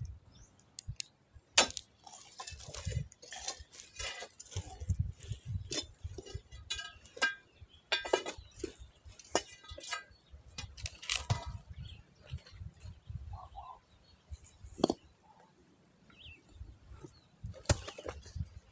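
Steel crowbar striking and prying at a cracked boulder: an irregular series of sharp metallic clinks of iron on stone, with a short lull past the middle.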